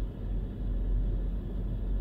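Steady low engine rumble, heard from inside a parked vehicle.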